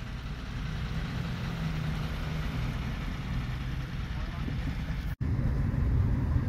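Steady low rumble of a car's engine and road noise heard from inside the cabin. It cuts out for an instant about five seconds in, then carries on at the same level.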